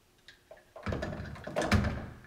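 An exercise cord tied to a door handle is let go and swings against the door: rustling for about a second, with a sharp knock near the end.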